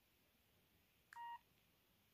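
A single short keypad beep from a Range Rover mini Chinese mobile phone (model 88888) as a key is pressed, about a second in, with a faint click at its start.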